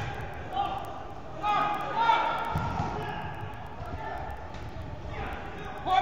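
Players shouting across an indoor soccer hall, their calls echoing, with a few dull thuds of the ball being played. A shout of "go" comes right at the end.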